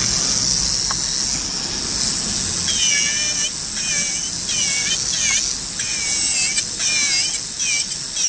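Electric nail drill whining as its bit files the gel on a fingernail during a gel fill. From about three seconds in, the whine dips and rises over and over as the bit is pressed to the nail and lifted.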